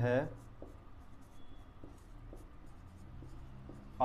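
Marker pen writing on a whiteboard: faint, short scratching strokes as a line of text is written.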